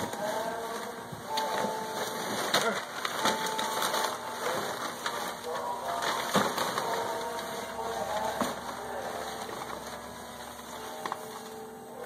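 A plastic trash bag rustling and crackling as it is handled close by, with a few sharper crinkles. Indistinct voices sound in the background.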